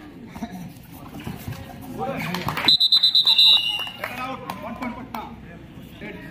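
Referee's pea whistle blown in one short trilled blast about halfway through, dropping in pitch as it ends, over the voices of players and spectators.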